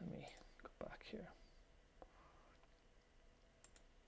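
Quiet room with a brief, low, whispered murmur of a man's voice in the first second, then a few faint computer-mouse clicks, one about two seconds in and a couple near the end.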